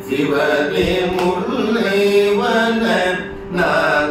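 Two male voices singing a Carnatic song together in raga Shanmugapriya, adi tala, holding long melodic notes, with a short breath pause about three seconds in.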